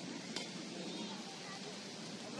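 Steady hiss of falling rain over a soccer pitch, with faint distant voices from the field and one short click about a third of a second in.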